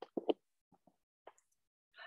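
A pause in a man's speech: mostly silence, with the tail of his last word at the start and then a few faint short clicks spread across the next second or so.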